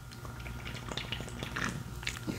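A person gulping beer from an aluminium can close to a microphone: faint swallowing sounds with small wet clicks.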